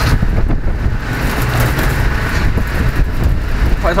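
Loud, steady low rumble of city street traffic.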